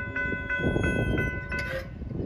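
Norfolk Southern freight train approaching on a curve: a steady low rumble from the oncoming locomotive, with a high ringing chord of steady tones over it that cuts off abruptly near the end.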